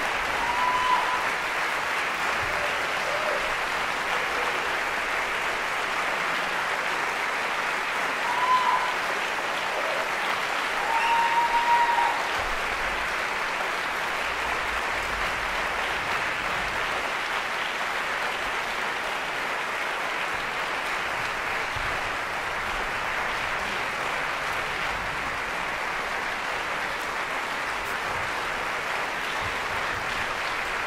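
Concert hall audience applauding steadily, with a few short cheers rising above the clapping about a second in and again around eight and eleven seconds.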